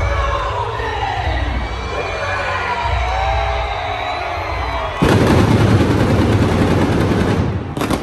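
Arena crowd cheering and shouting over the bass of entrance music. About five seconds in, stage pyrotechnics go off: a sudden, loud, rapid run of blasts lasting nearly three seconds, then cutting off.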